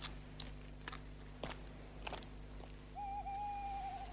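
An owl hooting once near the end: a single long note with a wavering start, over a few faint scattered clicks and a low steady hum.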